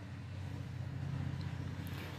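A faint, steady low hum in the background, with no distinct event standing out.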